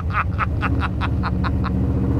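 A man laughing, about ten quick pulses at roughly five a second that stop near the end, over the steady low rumble of the Mustang's 8-71-supercharged 521-cubic-inch big-block V8.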